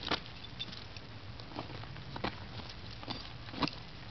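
A few scattered crunches of gravel underfoot, about five over four seconds, as a small dog scrabbles and jumps on a gravel drive and a man shifts his feet, over a low steady outdoor background.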